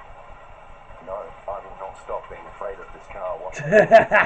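Speech only: a voice says "No", softer talk follows, and a man laughs loudly near the end.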